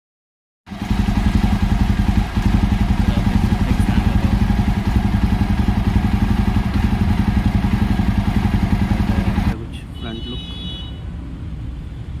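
Jawa 42 Bobber single-cylinder motorcycle engine and exhaust running steadily at an even, fast pulse. About three quarters of the way through it drops abruptly to a quieter level and keeps running.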